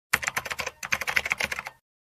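Rapid computer-keyboard typing clicks, a typing sound effect for on-screen text being typed out, with a short pause partway through.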